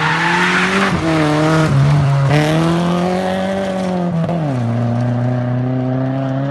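Opel Corsa rally car's 2.0-litre C20NE four-cylinder engine running hard on a stage, its note shifting up and down with throttle and gears, then dropping sharply about four seconds in and holding steady. A rush of tyre and gravel noise from the car sliding on the loose, dusty surface rides over the engine for the first two seconds or so.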